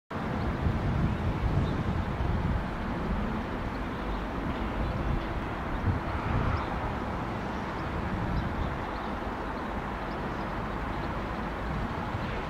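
Steady outdoor rumble and hiss, a little stronger in the first few seconds, with no clear rise in level.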